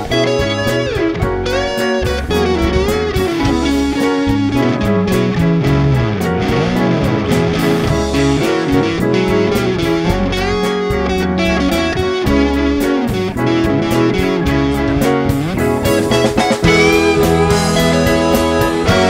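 Live big band playing the instrumental break of a blues-rock song: a lead line of sliding, bending notes, most likely electric guitar, over drums, bass and the horn section.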